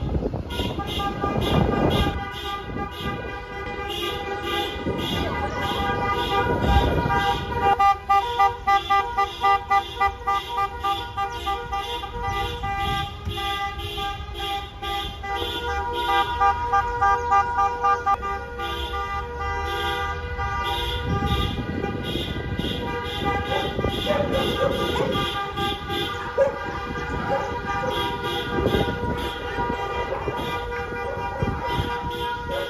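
Several car horns honking together in a motorcade, some held and some sounded in quick runs of repeated beeps, loudest about a third of the way in, over car engines.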